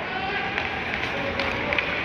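Ice hockey play: skates scraping across the ice and a few sharp clicks of sticks on the puck, with distant voices of players and spectators.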